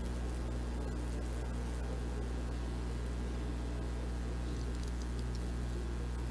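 Steady low hum with a faint even hiss and no distinct events.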